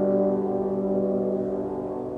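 French horn ensemble holding its final sustained chord, which starts to fade away in the second half.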